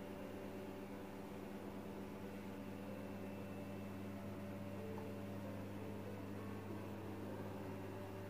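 A steady low electrical hum over a constant hiss.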